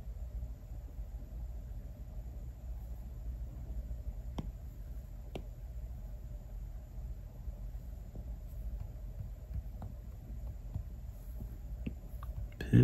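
Quiet room tone with a low steady hum, broken by a few faint taps of an Apple Pencil on an iPad's glass screen.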